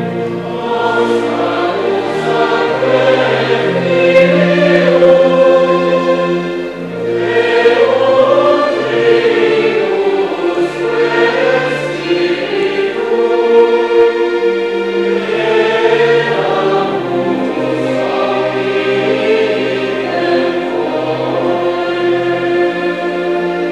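A choir singing liturgical music in long, sustained phrases over held bass notes.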